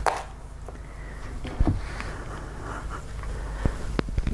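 Small travel iron sliding and pressing along a folded fabric strip on a padded ironing board: soft scraping, with a short knock about one and a half seconds in and a fainter one near the end, over a steady low hum.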